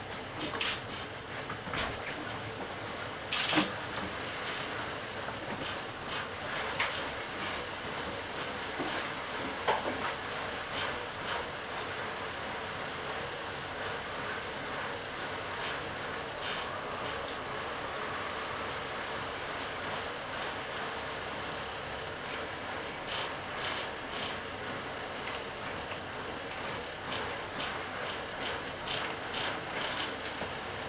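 Dm7 diesel railcar idling while standing, a steady engine hum with a thin high whine, heard from the cab. A few sharp clicks come in the first ten seconds.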